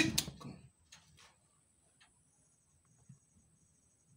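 A voice trails off at the start, then a few faint, scattered scuffs and ticks of rabbits moving about on loose bedding in a hutch.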